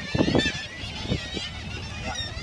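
Seabird colony chorus: many birds calling over one another at once, a dense, unbroken din of honking, crying calls.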